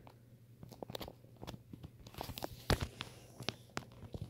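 Faint, irregular small clicks and crunches, several a second, with one louder knock about two and three-quarter seconds in.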